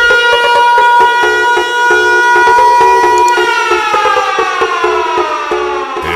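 Electronic intro music: a loud, siren-like synthesized tone held steady for about three seconds, then gliding slowly down in pitch, over a repeating beat of low thumps and clicks.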